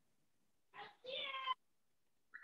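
A faint, brief high-pitched call, about half a second long, a second in, with a short softer sound just before it.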